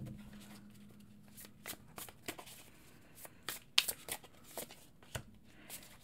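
Muse Tarot cards being shuffled and handled in the hands: soft, irregular card flicks and slaps, the sharpest about four seconds in.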